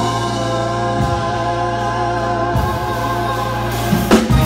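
Live band music: a long sung note with vibrato held over a sustained chord and steady bass, with a drum hit at the end.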